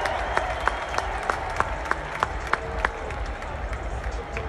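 Arena crowd noise in a large basketball arena, with sharp, evenly spaced claps, about three a second.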